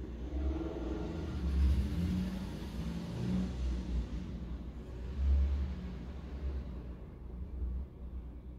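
A low rumble like a motor vehicle going by, swelling about two seconds in and again about five seconds in.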